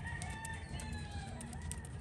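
A rooster crowing faintly: one long call with a slightly falling pitch that ends near the end.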